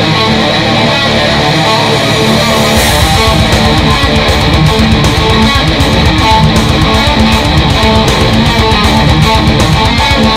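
Heavy metal riffing on a high-gain distorted electric guitar, a Dean VMNTX through a Peavey 6505 amp head, played along with the band's backing track. About three seconds in, the drums come in with a crash and fast, dense kick-drum strokes under the guitar.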